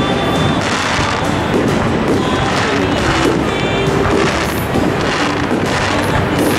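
Fireworks going off, a few bangs and crackles, over steady, continuous music.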